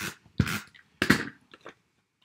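Four or five short rustling, scraping bursts of paper and cardstock being handled and pressed down onto a card base, about half a second apart.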